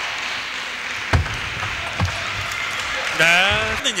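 Table tennis ball hits during a short rally: two sharp clicks about a second apart over a steady hall hubbub, then a man's excited voice near the end as the point is won.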